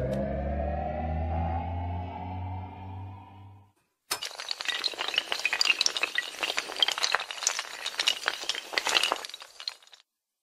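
Animated intro sound effects: a synthesized tone over a low hum, rising slowly in pitch and fading out after about three and a half seconds. After a brief gap comes a dense run of crackling, clinking clicks that stops just before the end.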